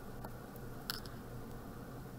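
Quiet room with a faint low hum and a single soft tick about a second in, a pencil being brought down onto a paper worksheet.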